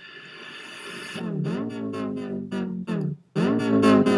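Electronic dance-pop song playing: a synth swell rises over the first second, then a run of short chopped notes, each swooping down in pitch.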